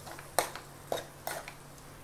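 Steel spoon knocking and scraping against a non-stick pan while stirring: a few sharp clicks about half a second apart, with softer scrapes between.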